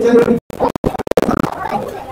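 A person's voice over music, broken up by several abrupt cuts and brief dropouts.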